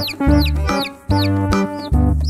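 Chick peeping in short, high, falling chirps, about four a second, over background music with deep sustained bass notes.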